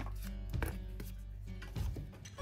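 Scissors snipping through thin chipboard, a few separate cuts, over steady background music.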